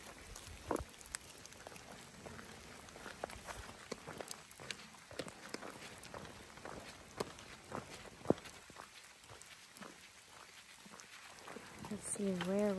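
Light rain falling, with scattered irregular drop ticks and the footsteps of people crossing a wet road.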